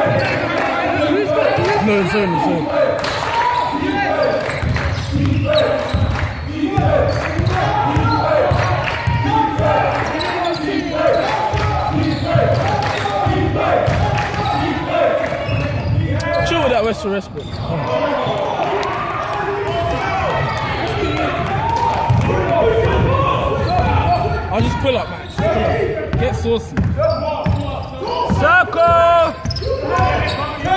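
Basketball bouncing on a wooden sports-hall floor during play, with players' shouted calls over it, all echoing in the large hall.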